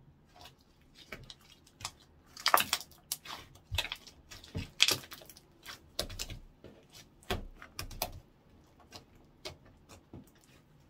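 Orange slime being pressed, patted and poked with the fingertips against a wooden tabletop, giving an irregular run of sharp wet pops and clicks, loudest about two and a half seconds in.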